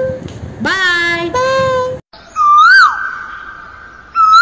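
A high voice draws out a word or two. After a sudden cut about halfway in, a single whistled bird-like call rises and falls, and a held tone rings on after it, fading.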